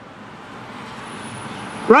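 Road traffic: a car passing on the road, its tyre and engine noise growing louder as it approaches.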